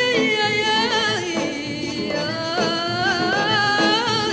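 A woman singing a long, ornamented melodic line in an Algerian song, her voice wavering in pitch with vibrato and gliding between notes, over instrumental accompaniment.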